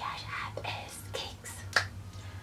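Breathy, whispered vocal sounds, then two sharp clicks made with the hands, a light one just after a second in and a louder one near the end.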